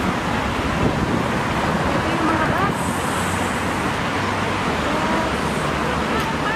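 Steady rush of road traffic as cars stream past on a busy city avenue, with faint voices of passers-by underneath.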